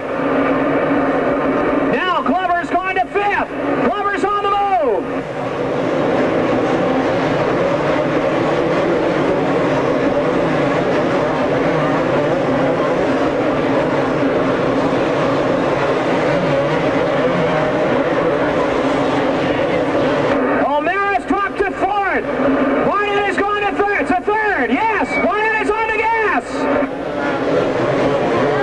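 Two-stroke motocross bikes racing, their engine notes rising and falling as the riders rev through the track, heard clearly about two seconds in and again for several seconds near the end. Between those, a steady drone of engines fills the arena.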